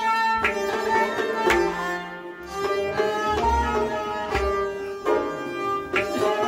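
Kashmiri Sufi instrumental music: a bowed sarangi plays a sustained, gliding melody over low hand-drum strokes about once a second.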